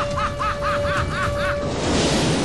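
Film soundtrack: a rapid string of short high notes, each rising and falling, about four a second, over one held tone that stops shortly before the end, with a steady low rumble underneath.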